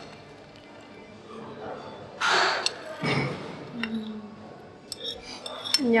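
Metal spoon scraping and clinking against a ceramic plate and soup bowl as toppings are pushed off the plate into the soup, with one longer, louder scrape about two seconds in and small clinks around it.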